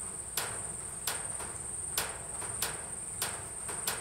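Steady high-pitched drone of insects, with a sharp click repeating about every two-thirds of a second.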